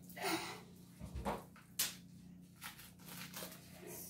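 Quiet handling of small toy pieces and plastic packaging: a few brief crinkles and taps, spaced out.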